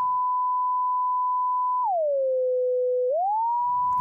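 A pure sine-wave test tone held at 1 kHz, gliding smoothly down an octave to 500 Hz a little before halfway, holding there about a second, then gliding back up to 1 kHz near the end. Auto-Tune is bypassed, so the pitch slides smoothly with no stepping.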